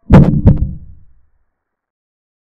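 A sound effect of two heavy, deep thumps about half a second apart, the second dying away over about a second.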